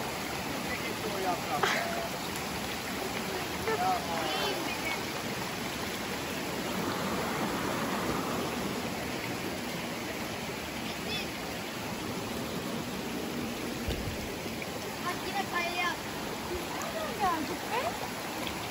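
Water running steadily in a stream: an even, unbroken rushing.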